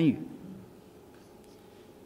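A man's voice ends a sentence, then comes a quiet pause in a small room with a faint rustle of papers at a lectern.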